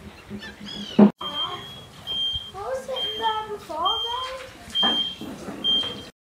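A short, high electronic beep repeating about once a second, six times, starting after a loud knock about a second in.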